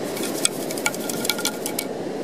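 Sand being shaken and sifted through the holes of a perforated beach-detecting scoop, with many quick ticks and rattles of grains and grit over a steady hiss.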